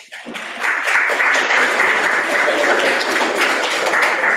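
Audience applause: many hands clapping, rising over the first second, then continuing steadily.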